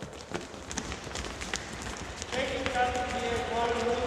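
Light, quick footfalls of a group of children trotting in small springy hops on a sports-hall floor, an irregular patter of many steps. A voice starts talking about two seconds in.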